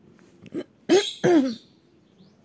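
A person clearing their throat: a faint catch, then two short rasping, voiced throat-clears in quick succession about a second in.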